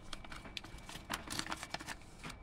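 A sheet of paper rustling and crinkling as it is handled, with scattered light clicks and taps, a few more in the second half.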